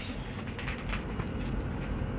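Faint rustling of a thin plastic shopping bag and handling of a cardboard-and-plastic collectible box as it is pulled out, most of it in the first second and a half.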